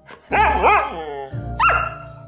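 Siberian husky vocalizing in its 'talking' way: two quick yowls that rise and fall in pitch, then a sharp upward-swooping yelp near the end.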